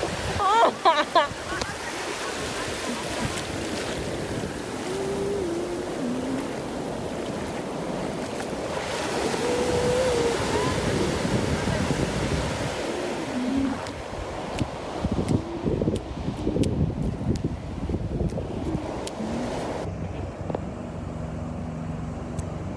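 Ocean surf breaking and washing in over the shallows, with faint voices calling out now and then. Near the end the sound turns duller, with a low steady hum.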